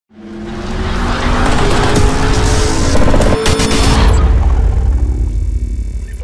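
Loud channel-intro music mixed with a dense, noisy sound effect. It swells in over the first second, has a sharp hit about halfway through, and fades out near the end.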